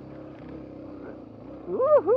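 Suzuki DR-Z250 single-cylinder four-stroke engine running steadily at low revs, lugging in second gear, with its silencer fitted keeping it fairly quiet. Near the end the rider lets out two short rising-and-falling exclamations.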